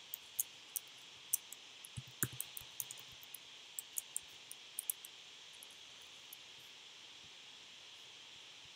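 Typing on a laptop keyboard: an irregular run of quick key clicks over the first five seconds, one a little heavier, then stopping, over a steady faint hiss.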